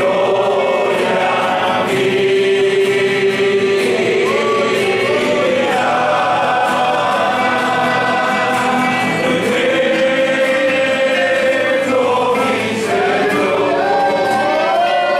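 A church congregation singing a hymn together, holding long notes, with strummed acoustic and electric guitars accompanying.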